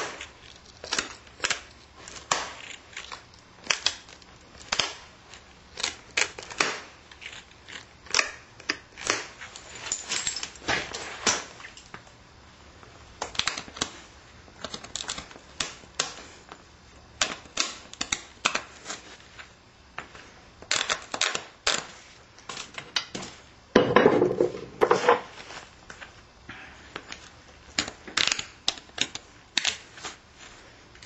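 Knapping a stone point's edge by hand: an irregular string of sharp clicks and short scrapes as a small pointed flaker is pressed against the edge and little flakes snap off. A longer, louder rasping scrape comes about three-quarters of the way through.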